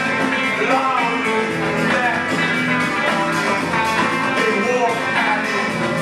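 A rock band playing live through amplifiers: electric guitar, bass guitar and drum kit. The music is dense and steady, with sliding, bending melody notes.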